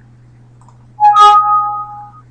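Windows warning chime as an error message box pops up: two bright notes, the lower first and the higher just after, ringing for about a second. It signals that the Shape Bender script was started without a group selected.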